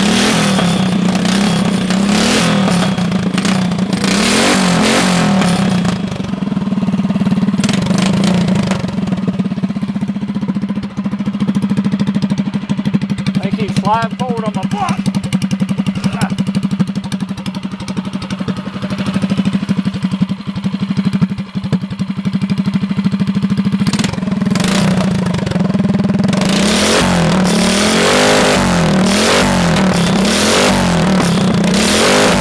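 Small single-cylinder clone engine running through its newly built exhaust pipe, holding a steady note, with the revs rising and falling a few times, most near the end.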